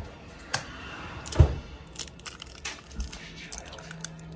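A raw egg being cracked open: two sharp taps of the shell, the louder about a second and a half in, then small clicks and crunches as the shell is pulled apart.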